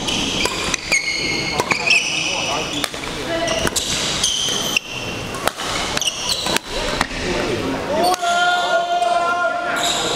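Badminton doubles rally: sharp racket strikes on the shuttlecock and sneakers squeaking briefly on the court floor, with voices of players and onlookers echoing in a large hall. Near the end one long call is held for about two seconds.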